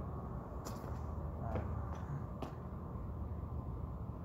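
Three light, sharp clicks about a second apart over a steady low background rumble.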